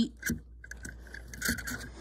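Handling noise of toy cars being moved by hand: light knocks and scrapes, one about a third of a second in and a small cluster about a second and a half in.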